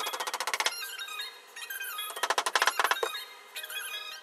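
Background music with a moving melody, broken by two short bursts of rapid, squeaky pulses: one at the start and a louder one about two seconds in.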